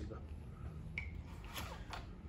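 Quiet handling of a rifle and its parts: a single small sharp click about a second in, then a brief murmur of voice near the end.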